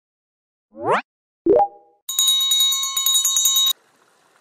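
Intro sound effects: a quick rising swoop, then a short plop with a brief ringing tone, then bright, rapidly repeated bell ringing that cuts off suddenly.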